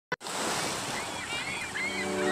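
Small waves breaking and washing up onto a pebble beach, with wind on the microphone. A brief click at the very start.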